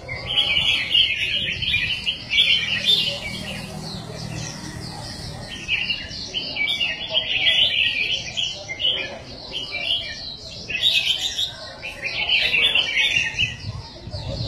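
Several caged red-whiskered bulbuls singing at once: overlapping phrases of quick, bright chirps that come in bursts with short pauses, over faint background voices.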